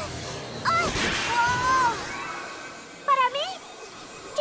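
Cartoon soundtrack: short wordless vocal cries from animated characters, one a little under a second in, another around the middle, and a rising-and-falling one about three seconds in, over background music and a magic sound effect.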